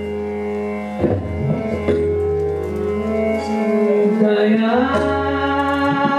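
Hindustani classical vocal in raag Bairagi Bhairav: a woman sings long held notes, sliding up in pitch about four seconds in, over a steady harmonium. Tabla strokes come in here and there.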